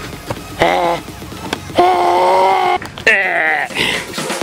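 A person's voice making wordless sounds: a short call, then a held high note about two seconds in, then a falling whoop near the end.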